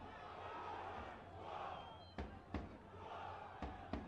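Football stadium crowd chanting in a repeating rhythm, the chant swelling and falling, with pairs of sharp beats about a second and a half apart.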